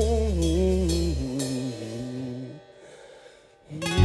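A live acoustic band's song: a chord held over bass, then a few falling notes that fade to very quiet. Full music comes back in loud just before the end.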